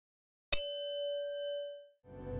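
A bell-chime notification sound effect: a single ding struck about half a second in, ringing on with a steady tone and fading out over about a second and a half.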